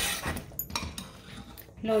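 Metal spoon stirring thick cranberry sauce in a stainless steel stockpot, scraping and clinking against the pot. The scraping is loudest at the start and fades within about half a second, with a few faint clicks after.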